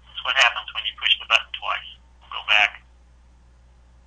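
A voice speaking a few words over a telephone conference line, narrow and tinny, over a steady low hum; the speech stops a little under three seconds in.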